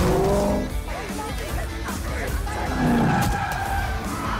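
A car skidding with its tyres squealing, over background music.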